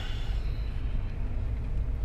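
Steady low rumble of a 2021 Mercedes 220d 4MATIC diesel car driving, its road and engine noise heard from inside the cabin.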